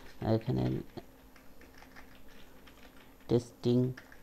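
Computer keyboard typing: a run of quiet key clicks as a file name is typed.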